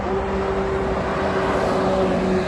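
Wind rumbling on the microphone, with a steady low droning hum held through it.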